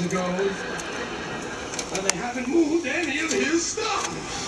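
A man's voice without clear words: a drawn-out word trailing off at the start, then a wavering, hummed mumble for over a second, about two seconds in, with a few faint clicks.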